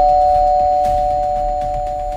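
Two-tone ding-dong doorbell chime ringing on. Its higher and lower notes, struck just before, hold together and slowly fade.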